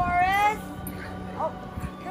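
A high-pitched excited call, one long, slightly rising note at the start, then a short upward yelp about a second and a half in, over soft background music.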